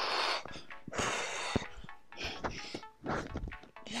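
Heavy, hard breathing from exertion during sit-up exercise: a forceful breath about once a second, over background electronic music.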